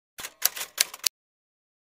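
A quick run of about half a dozen sharp clicks lasting under a second, then dead silence.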